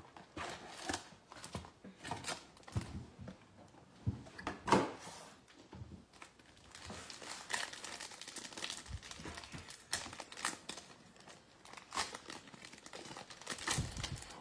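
Foil wrapper of a trading card pack crinkling and tearing as it is pulled from a cardboard box and ripped open, with scattered handling clicks of cards and cardboard. A single louder knock comes about five seconds in.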